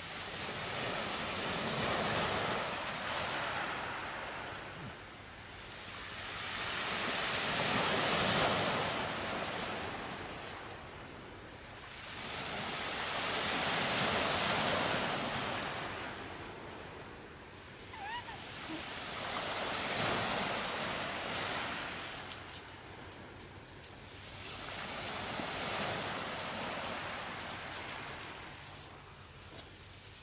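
Sea waves surging in and washing up the shore, the wash swelling and fading about every six seconds.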